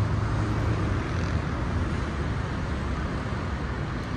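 Steady city traffic noise: a continuous low rumble of passing road vehicles.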